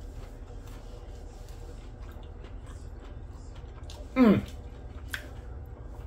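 A person chewing a mouthful of breaded, cream-cheese-stuffed jalapeño popper: faint small crunches and clicks over a low steady hum.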